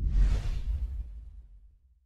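Whoosh transition sound effect over a deep low rumble, swelling quickly in the first quarter-second and then fading out over the next second and a half.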